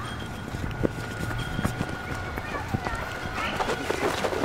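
Running footsteps on grass, a scatter of short thuds as two people chase and scuffle, with a voice calling out near the end.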